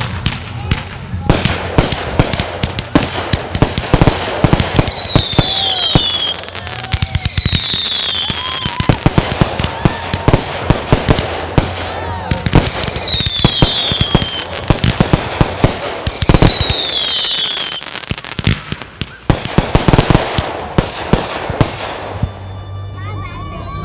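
Consumer fireworks going off in a rapid string of bangs and crackles. Four descending whistles, each about a second long, rise above the bangs.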